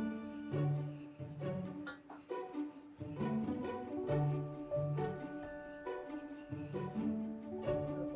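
Background instrumental music on string instruments, slow sustained notes that change every second or so.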